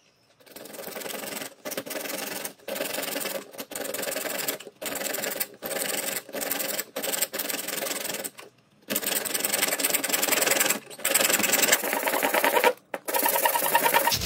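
Hand hacksaw cutting through a PVC pipe wrapped in masking tape: rasping saw strokes in runs of about a second with brief pauses, and a longer pause about eight and a half seconds in.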